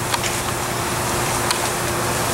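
Steady background noise with a low hum and a faint steady whine, like a fan or distant traffic, broken by a faint click about one and a half seconds in.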